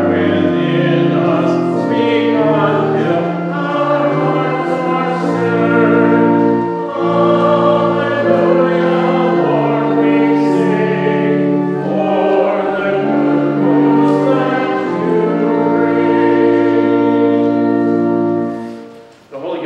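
A congregation singing with organ accompaniment, in held chords that change every second or two.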